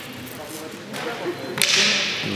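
A wooden combat cane whips through the air in a fast strike about one and a half seconds in: one sharp swish, the loudest sound here, at a flank attack the commentator praises right after ("beau flanc"). Faint voices can be heard before it.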